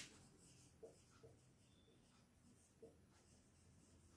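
Faint strokes of a marker pen writing on a whiteboard, with a few soft knocks.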